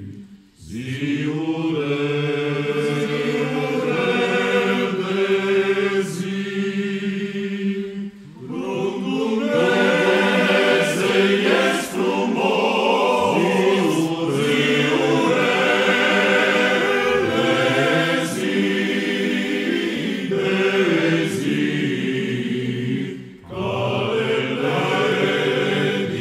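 Male choir singing a Romanian Christmas carol a cappella in low men's voices, in sustained phrases with brief breaths between them.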